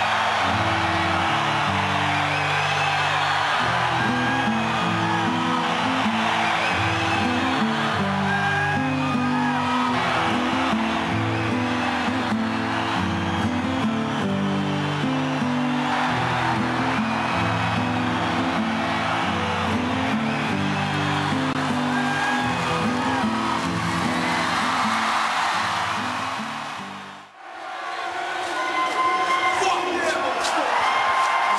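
Loud live heavy rock in an arena, sustained low bass and guitar chords changing every second or so, with crowd screams and whistles over it. It cuts out abruptly near the end, and crowd noise swells back in.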